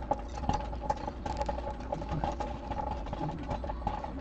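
Small clicks and rustles of hands handling the copper wire leads of a toroid and small ring terminals, over a steady low hum with a faint wavering whine.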